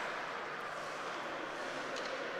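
Steady ice hockey rink ambience: an even hiss of skates on the ice and the arena, with no sharp impacts.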